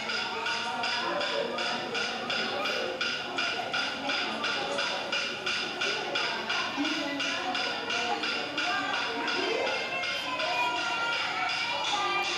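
Aboriginal smoking-ceremony singing over a steady rhythmic tapping beat of about three to four beats a second.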